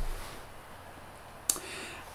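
Quiet room tone in a pause between speech, with one short, sharp click about one and a half seconds in, followed by a faint hiss.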